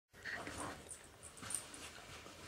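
A dog makes a short vocal sound in the first second, followed by a few scuffs and a sharp click about one and a half seconds in as it pushes into a fabric dog house.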